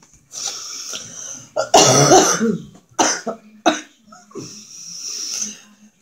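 A woman coughing several times, the loudest cough about two seconds in, with short breathy, hissing exhales around the coughs.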